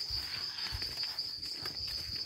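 A continuous high-pitched insect chorus, holding one steady pitch without a break.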